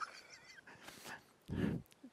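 Faint, scattered snoring noises from someone dozing off, with a short snort about one and a half seconds in.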